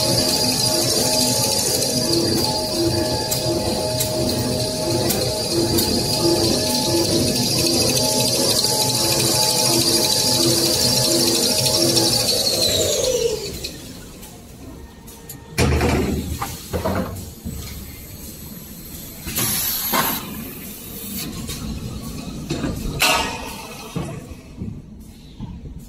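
A glue-laminating kitchen towel roll production line running with a steady whine and a soft beat repeating about every 0.7 s. About 13 s in the whine falls in pitch and dies away as the rollers run down to a stop. Quieter scattered knocks and thumps follow.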